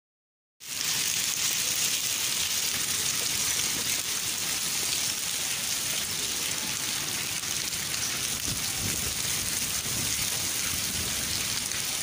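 Rain and sleet falling steadily onto a concrete courtyard, a dense even hiss of countless small impacts. The sound cuts in abruptly about half a second in.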